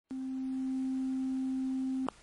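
A steady, low, pure electronic tone held for about two seconds, cut off by a sharp click at the end.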